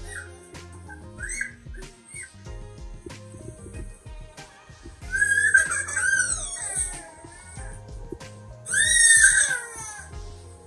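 A toddler crying: two loud, high cries, the first about five seconds in and lasting a couple of seconds, the second near the end, over background music.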